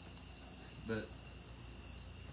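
A steady, high-pitched background whine or chorus runs under a quiet room. A single short spoken word comes about a second in.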